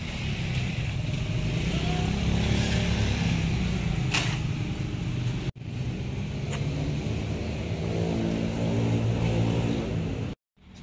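Motorcycle engines with loud aftermarket open 'brong' exhausts running, a steady low drone that breaks off for an instant just after halfway.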